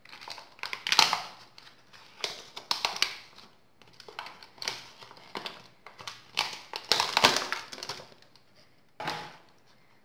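Thin clear plastic Easter egg mould crackling and crinkling in irregular bursts as it is flexed and peeled away from a set white-chocolate shell. The loudest crackles come about a second in and around seven seconds.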